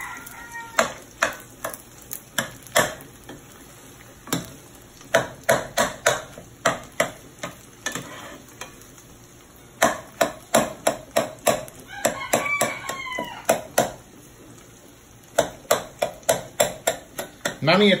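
Metal spoon tapping and scraping against a non-stick frying pan as scrambled eggs are chopped up in it, in runs of quick knocks about three or four a second, over eggs frying faintly in oil.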